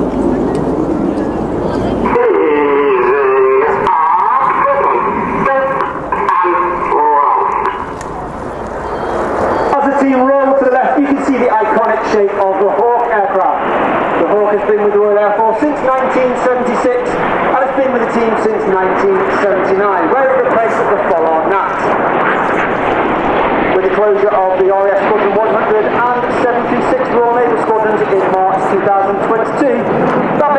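Indistinct voices with no words made out, over a steady rushing background noise.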